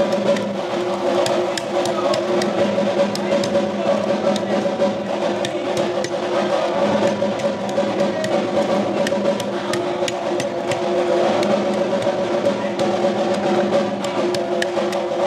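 Devotional temple music: drumming and percussion over a steady droning tone, with many sharp clicks and strikes above it.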